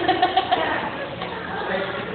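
Girls laughing: a quick run of short, high giggles in the first half second, then softer voices.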